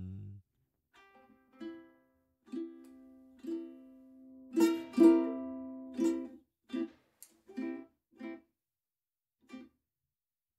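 Fender Telecaster-shaped electric ukulele plucked in slow, separate notes, about one a second. The early notes ring and die away, the loudest come around five seconds in, and the later ones are cut short.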